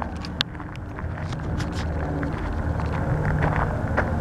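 Low rumble of wind on the microphone outdoors, with scattered crunching clicks of footsteps on gravel.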